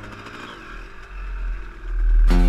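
Off-road motorcycle engine running, swelling and easing off with the throttle, heard in a gap between music tracks.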